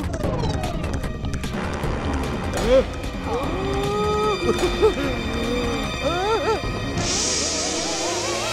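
Cartoon background music for a running scene. From the middle on, wavering, gliding voice-like sounds play over it, and near the end a hissing whoosh comes in.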